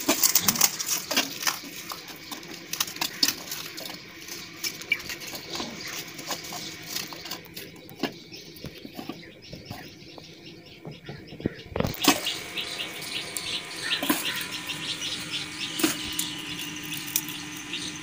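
Metal spoon clinking and scraping against steel cookware in short, irregular taps while a dessert mixture is stirred and spooned out.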